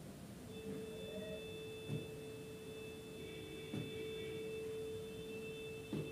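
Steel ladle stirring gravy in a large steel pot, with a couple of faint knocks. A steady ringing metallic tone holds from about half a second in.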